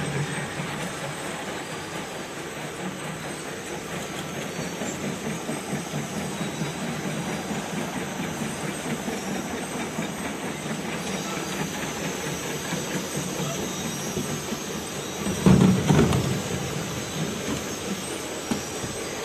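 Automatic bucket weigh-filling and capping line running: a steady mechanical noise with a short, louder burst about three-quarters of the way through.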